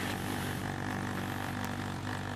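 Suzuki Bandit motorcycle's inline-four engine running steadily at low revs while the bike rolls slowly.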